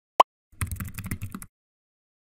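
Computer keyboard typing: one sharp click, then a fast run of keystrokes lasting about a second.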